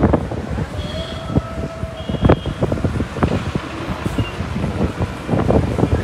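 Road and traffic noise from a moving car, with wind buffeting the microphone in irregular low thumps. A faint held tone sounds about a second in.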